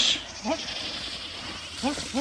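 A few short, rising shouts from onlookers cheering on a water buffalo, over a steady background hiss: one about half a second in and two close together near the end.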